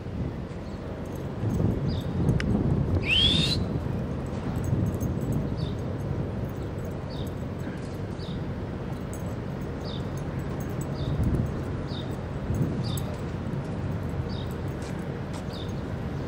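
A bird calling: one loud rising call about three seconds in, then short high chirps repeating roughly every three-quarters of a second, over a steady low background rumble.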